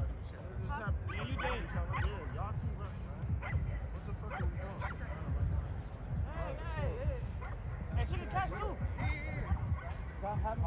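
Indistinct voices of players calling out across the field, several short shouts over a constant low rumble.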